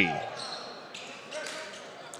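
Faint background sound of a basketball game in a gymnasium: low crowd noise and court sounds.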